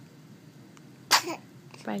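A newborn baby sneezing once, a short sharp sneeze about a second in.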